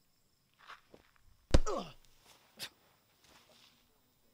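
A sharp thump about one and a half seconds in, trailed by a falling pitched sound, among a few softer scuffs and a short click shortly after.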